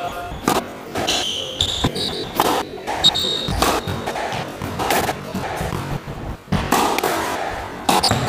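Squash ball bouncing and knocking on the wooden floor and walls, with short shoe squeaks, all echoing in the enclosed court. A sharp knock comes right at the end.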